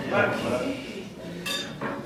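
A fork clinks once against tableware as a place setting is laid, a sharp ringing clink about one and a half seconds in.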